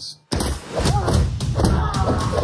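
Fight sound effects: a rapid series of heavy thuds and blows with a man's grunts, starting abruptly after a moment of silence.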